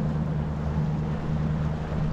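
Boat motor running with a steady low hum, over wind and water noise.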